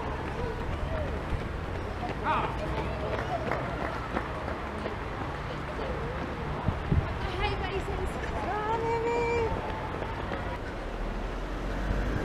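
Outdoor crowd ambience: faint voices of people chatting and calling out, with one longer held call a little past the middle, over a steady low background rumble.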